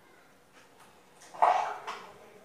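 A dog barking: one short, loud bark about a second and a half in.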